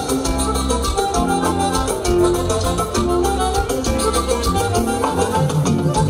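Live band playing Latin dance music with a steady beat.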